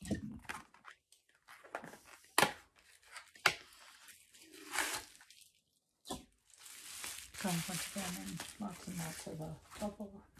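Cosmetics packaging being handled and torn open: crinkling and tearing, with three sharp clicks in the first six seconds. Quiet speech takes over in the last few seconds.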